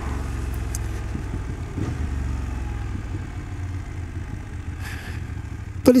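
BMW F800 GS parallel-twin engine running at low revs in second gear as the motorcycle slows down, a steady low rumble that eases off slightly after about three seconds.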